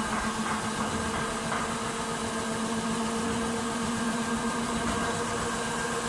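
Servo-driven double-shaft paper slitting rewinder running, winding kraft paper onto its upper and lower shafts: a steady machine hum over an even hiss.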